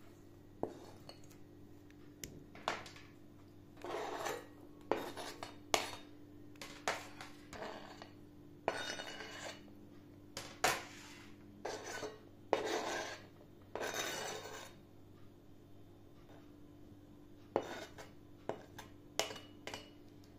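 A knife scraping chopped vegetables off a cutting board into a glass salad bowl, in irregular short scrapes with sharp knocks and clinks between them.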